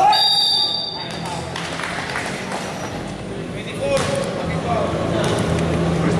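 A referee's whistle blown once, shrill and held for about a second and a half, stopping play for a personal foul. Voices and crowd chatter in the gym follow.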